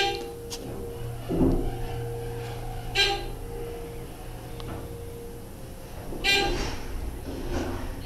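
Dover hydraulic elevator car rising, its pump running with a low hum and a steady whine that stops about five and a half seconds in. The car's position-indicator bell dings three times, about three seconds apart, as floors are passed and reached.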